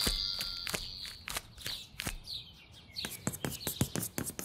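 Outro sound effects: a high ringing tone fades out over about the first second, then sharp, irregular clicks begin, coming about five a second near the end like keys typing, with faint short bird chirps among them.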